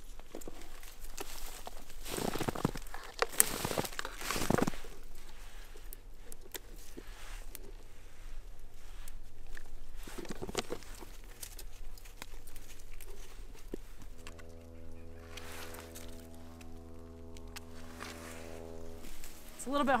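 Rustling of dry brush and crunching in snow as someone moves about picking berries by hand, with several louder rustles in the first five seconds. A steady hum with several overtones comes in about two-thirds of the way through and stops shortly before the end.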